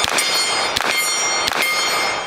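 About three shots from a CZ Scorpion EVO 3 pistol, roughly 0.7 s apart. Struck steel targets ring on in high, steady tones between the shots.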